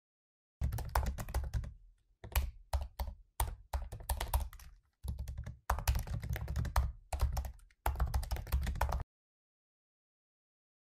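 Computer keyboard typing: quick runs of keystrokes with short pauses between them, starting about half a second in and stopping about nine seconds in.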